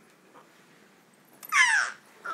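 A baby's loud, short, high-pitched squeal about one and a half seconds in, falling steeply in pitch.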